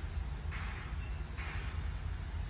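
Steady low outdoor rumble with a few brief soft rustles.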